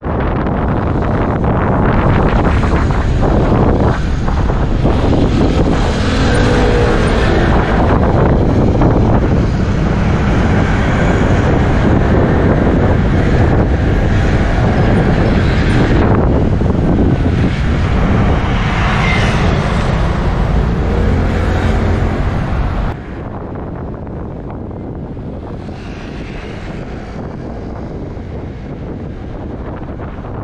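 Motorcycle riding through city traffic: wind buffeting the microphone over engine and road noise. About three-quarters of the way in it suddenly drops to a quieter, steadier level.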